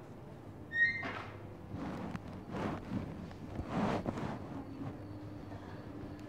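A short electronic beep about a second in, then a few seconds of rustling and shuffling over a steady low hum.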